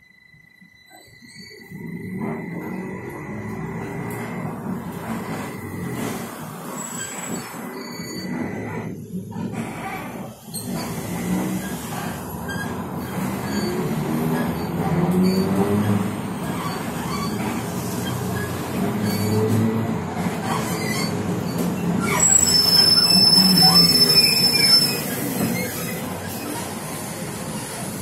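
Interior of a TrolZa-62052.02 trolleybus setting off from near standstill about two seconds in. The electric traction drive whines, with body and road rumble under it, as it runs through traffic. It is loudest near the end, where a high whine joins in.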